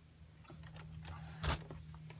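Faint steady low hum, with a single short knock about one and a half seconds in.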